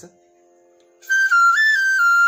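Bamboo bansuri flute starting a short melodic phrase in its high register about a second in. It plays a few held notes that step down, jump briefly higher, then settle back down.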